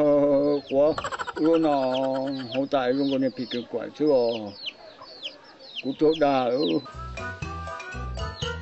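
Chicks peeping over and over in short, high, falling calls, under a man's loud talking. Music with a beat comes in near the end.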